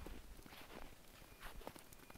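Faint footsteps in deep snow: a few unevenly spaced steps.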